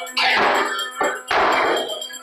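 Noise-rock band playing live: large drums struck with mallets, two heavy crashing hits about a second apart, each ringing out in a noisy wash over a steady low drone.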